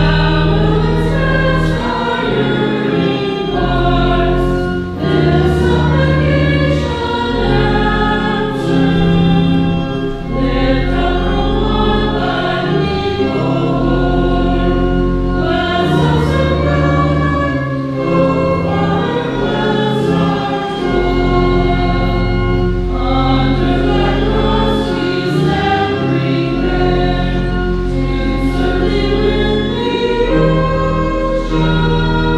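A hymn sung by a choir with church organ accompaniment, the organ holding long, steady bass notes under the voices.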